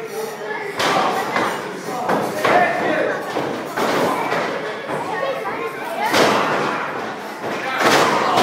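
Wrestling-ring impacts: about half a dozen heavy thuds of bodies and strikes landing, spread a second or more apart, with crowd voices shouting over them.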